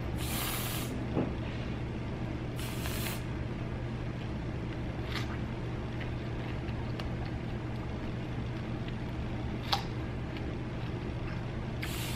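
Aerosol whipped-cream can spraying onto a strawberry in two short hisses, each under a second, near the start, with another starting at the very end. A few faint clicks in between over a steady low hum.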